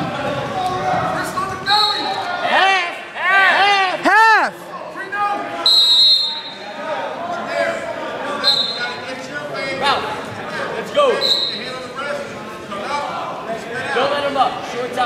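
Shouts from spectators and coaches around a wrestling bout, their pitch rising and falling, loudest about four seconds in. Short high whistle-like tones sound four times, with dull thuds in between. The gymnasium gives it all an echo.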